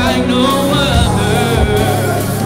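Live gospel worship music: singers with keyboard, bass and drums, played loud through the church sound system.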